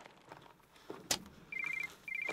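Mobile phone ringing: a short trill of rapid electronic beeps, starting about one and a half seconds in. A sharp click comes just before, about a second in.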